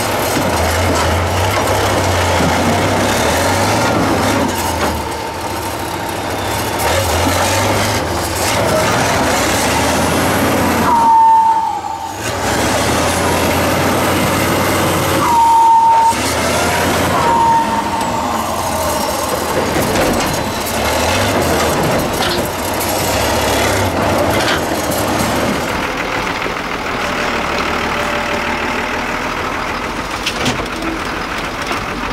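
Diesel engine of a 6x6 trial truck labouring at low speed, its pitch rising and falling as it crawls over large rocks. Twice, about 11 and 15 seconds in, a loud brief high-pitched squeal cuts through.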